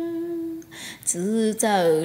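A woman's unaccompanied singing voice holds a long note that fades out about half a second in, then, after a breath, starts a new phrase with gliding, wavering pitch.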